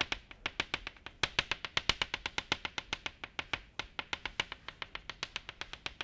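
Chalk tapping rapidly on a blackboard, stippling dots: a fast run of sharp taps, about eight a second.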